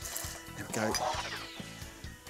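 Fizzy ginger beer being poured into a bar measure, over steady background music.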